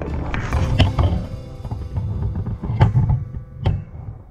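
Rough rustling, scraping and rubbing as a camera is pushed through a wire fence into dry leaf litter, with a few sharp knocks, over background music.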